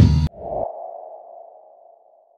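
A song with drums stops abruptly a moment in, then a single electronic ping tone sounds and slowly fades away.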